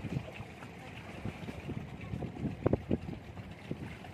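Wind buffeting the microphone over the wash of sea water against a rock breakwater, with a few irregular knocks, the loudest about two-thirds of the way in.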